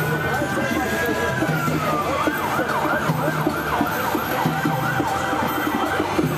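Emergency vehicle siren: a long wail that rises, holds and falls about two seconds in, then switches to a fast yelp for the rest, over the noise of a street crowd.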